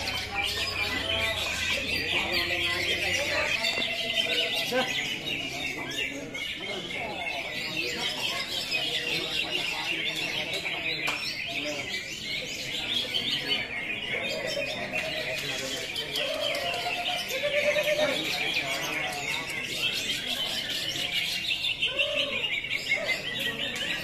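Many caged greater green leafbirds (cucak hijau) singing at once: a dense, unbroken chorus of high, rapid chirps and trills, with people's voices murmuring underneath.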